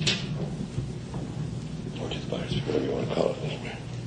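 Room tone of an old lecture recording: a steady low hum and hiss. There is a brief noise right at the start, and faint indistinct scuffs and a low murmured voice about two to three and a half seconds in.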